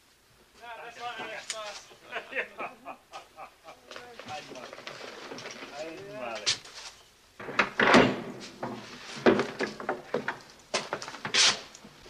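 Speech, with a short sharp sound about eight seconds in that is the loudest moment.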